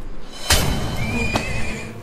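A horse neighing in a historical drama's soundtrack, a thin high call held for about a second, after a sharp hit about half a second in, with faint background music.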